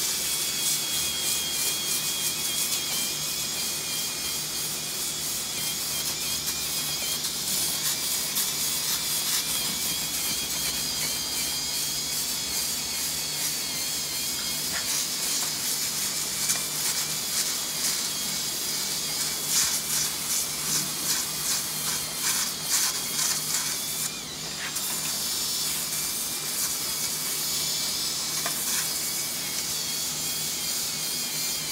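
Cordless drill with a sanding drum running steadily against a horse's hoof wall, a steady whine over a rough sanding hiss, briefly stopping once late on. It is the farrier's finishing step after shoeing, sanding the hoof wall flush with the new shoe.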